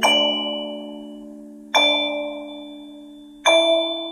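Slow lullaby played in bell-like chiming tones: three notes struck about a second and three quarters apart, each ringing and fading away over sustained lower notes.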